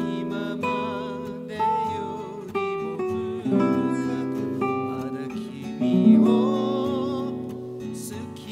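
Nylon-string classical guitar playing a single-note solo melody over Em, Cmaj7 and Bm7 chords, the held notes wavering with finger vibrato.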